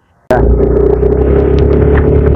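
A motor vehicle engine running steadily close by, heard as a loud low rumble with a steady hum. It cuts in abruptly a fraction of a second in, after a brief silence.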